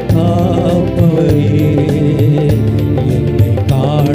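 A man singing a worship song into a microphone, his voice wavering in a chant-like melody over electronic keyboard accompaniment with held chords and a steady drum beat.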